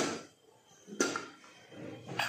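Stainless-steel pressure cooker lid being twisted loose and lifted off: two sharp metal clicks, one right at the start and one about a second in, each with a brief ring.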